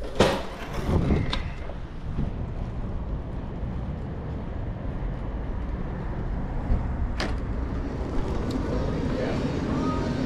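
A door bangs at the start, followed by a steady low rumble with a sharp click about seven seconds in.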